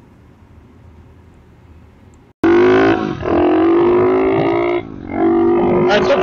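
Faint room tone, then after a sudden cut a 110cc four-stroke pit bike engine revving loud, its pitch climbing slowly; it dips briefly near five seconds and climbs again.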